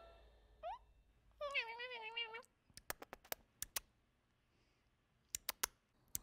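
A short rising squeak, then a longer, wavering meow-like call lasting about a second, followed by a few sharp clicks.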